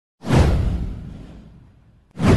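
Whoosh sound effect with a deep low rumble under it, coming in sharply just after the start and fading out over about a second and a half.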